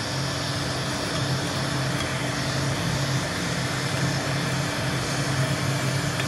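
Electric heat gun running steadily: a fan-motor hum under a rush of hot air blowing onto a powder-coated steel bracket.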